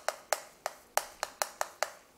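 Chalk writing on a chalkboard: a string of sharp taps and clicks, about four a second and unevenly spaced, as each stroke lands on the board.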